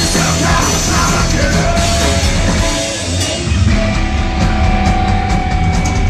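Punk rock band playing live: distorted electric guitars, bass and drums, with some singing early on. About halfway through, the band moves to a held guitar note over steady cymbal hits.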